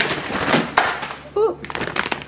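Crinkling and rustling of a foil-lined plastic food bag of rice cakes being handled, with a quick run of sharp crackles near the end.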